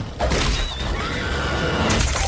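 Film trailer sound effects: a loud, wavering creature-like shriek amid crashing noise, starting a moment in, with music underneath.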